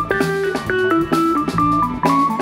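Live band playing an instrumental jam: a quick-stepping melodic lead line over electric bass and a drum kit, taken straight from the soundboard.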